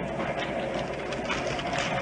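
Radio-drama sound effect of a passenger train running, heard from inside the carriage: a steady rumble and clatter with faint irregular crackles over it.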